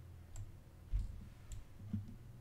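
Computer mouse clicks: two sharp clicks about a second apart, with a duller low thump between them, over a low steady hum.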